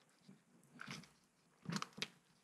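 Gloved hands peeling and flexing a flexible mold off a freshly cured concrete casting: two brief faint rubbing sounds, the second a little louder, near the end.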